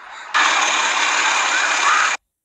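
Loud steady rushing noise that starts abruptly about a third of a second in.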